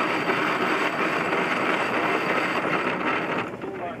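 Nylon spinnaker cloth rustling steadily as the crew haul the sail down in a douse, stopping about three and a half seconds in once the sail is down.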